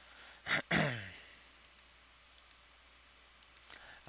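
A man's short sigh about half a second in, falling in pitch, followed by a few faint computer-mouse clicks.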